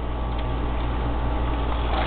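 Steady low hum under a hiss of background noise, growing slightly louder, with no distinct gulps or other events.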